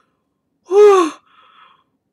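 A man's short voiced sigh of amazement, about half a second long, its pitch rising then falling, followed by a faint breath out.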